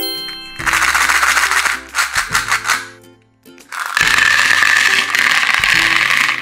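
Candy-coated chocolates (M&M's) tipped out of a small plastic bucket, clattering into a plastic tray in two pours of about two seconds each.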